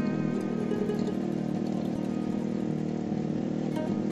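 Small petrol tiller engine running steadily as it works the soil, under background music with plucked-string notes.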